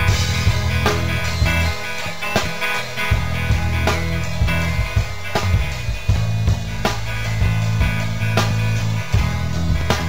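Instrumental break in a song with no vocals: guitar over held bass notes, with a drum beat striking about every three-quarters of a second.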